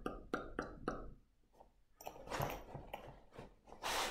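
Faint handling of a fabric project bag: a few quiet, quick clicks in the first second, then soft rustling later on.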